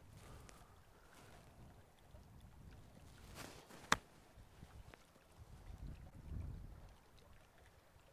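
A golf club striking the ball on a short pitch from the rough: a brief swish of the club through the grass, then one sharp click about four seconds in. Low wind rumble on the microphone around it.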